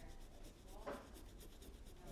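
Faint scrubbing of a paintbrush loaded with acrylic paint against canvas, with one brief, slightly louder sound about a second in.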